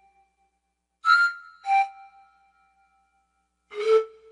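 Cartoon sound effects: three short, bright chime-like dings, two close together about a second in and one near the end, each leaving a brief ringing tone. They mark an animated kangaroo joey's hops.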